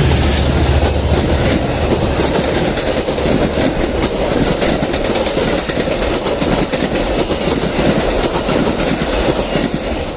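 A Metra commuter train passing close by. A diesel locomotive's low engine tone fades out in the first second, then the cars roll past with a steady rush and a rapid clickety-clack of wheels over the rail joints.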